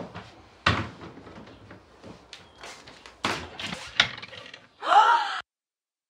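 Wooden cabinet doors and drawers knocking and banging as someone rummages through a sideboard. This is followed, about five seconds in, by a woman's short, loud startled cry that cuts off suddenly.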